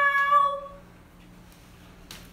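A woman's voice holding one long high note, the tail of a drawn-out goodbye, fading away about half a second in; then faint room tone with a small click near the end.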